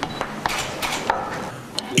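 Hand lever tube bender bending a copper pipe: scattered light metallic clicks and clinks from the tool as the handles are drawn round.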